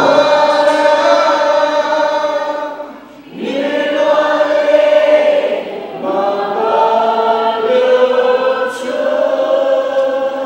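A group of voices singing a Nepali worship song together in long held phrases, with short breaks between phrases, over little instrumental backing.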